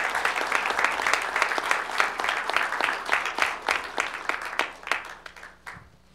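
Audience applauding. The clapping thins to a few scattered claps and stops just before the end.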